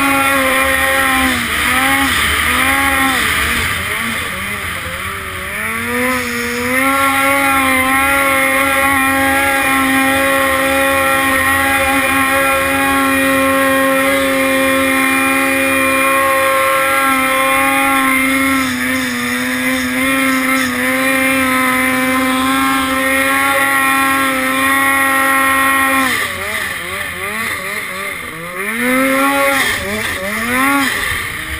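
Turbocharged Polaris two-stroke snowmobile engine pulling a steep hill climb. The revs rise and fall with the throttle for the first few seconds, then hold high and steady for about twenty seconds, and drop and surge again near the end.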